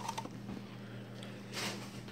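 Quiet room tone with a steady low hum, and a faint brief noise about three-quarters of the way through.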